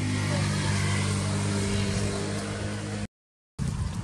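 Motor vehicle engine running steadily with a low hum, cutting off suddenly about three seconds in, followed by a brief dead silence and then quieter outdoor ambience.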